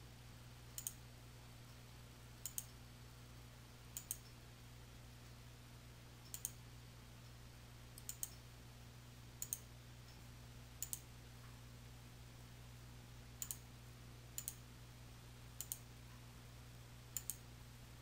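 Computer mouse clicking faintly, about a dozen clicks spaced one to two seconds apart, most heard as a quick press-and-release pair. A steady low hum sits underneath.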